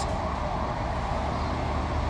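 Steady low rumble of vehicle engines and street traffic, with no distinct events.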